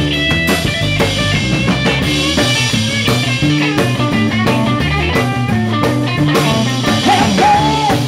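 Live rock'n'roll band playing an instrumental passage: a Telecaster-style electric guitar playing lead lines over electric bass and drum kit.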